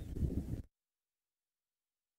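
A brief low rumble that cuts off suddenly less than a second in, followed by complete silence.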